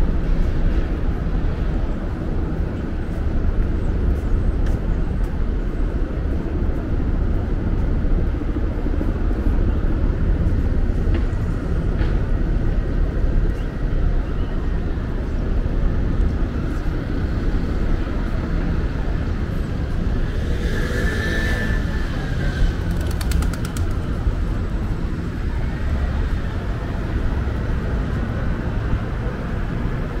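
City street ambience: a steady hum of traffic and passing cars. A brief high squeal comes about two-thirds of the way in, followed by a quick rattle.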